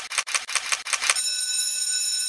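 Edited intro sound effect: rapid camera-shutter clicks, about eight a second. Just past halfway they give way to a steady high ringing tone of several pitches held together.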